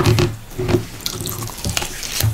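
Close-miked wet eating sounds: chewing and hands squishing fufu, egusi soup and goat meat, a run of small sticky clicks and smacks.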